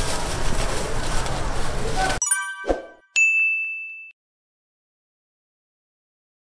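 Steady noisy din of a street-food stall for about two seconds, cut off abruptly by a short sparkling jingle of high tones and then a single bright ding, the end-screen sound effect, which rings for about a second.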